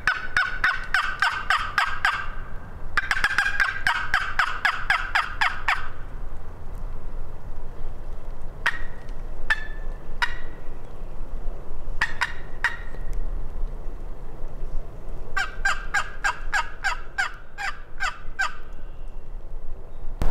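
Turkey box call worked in hen yelps: three runs of quick, evenly spaced yelps, about six a second, with a few single notes spaced out between the second and third runs.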